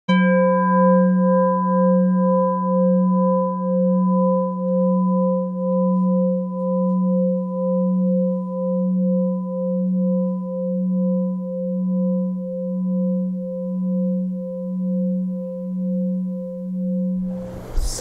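A singing bowl struck once and left ringing. Its tone wavers in loudness and slowly fades, its higher overtones dying away within the first couple of seconds, until the ringing is cut off shortly before the end.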